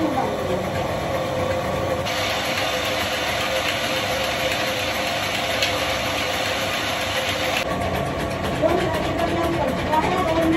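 Electric household flour mill (atta chakki) running steadily while grinding grain: a continuous motor hum with a steady whirring note and grinding noise over it.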